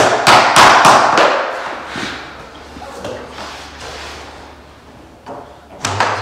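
Rubber mallet knocking a luxury vinyl plank sideways to snap its tongue-and-groove joint closed: a quick run of about six sharp knocks in the first second and a half, then two more near the end.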